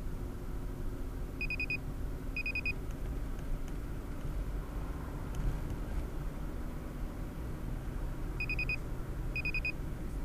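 Steady road and engine rumble of a car at highway speed, heard from inside the cabin. It is broken twice by a pair of short electronic beep bursts, each a quick run of about four high beeps, the bursts a second apart: a warning chirp from an in-car device.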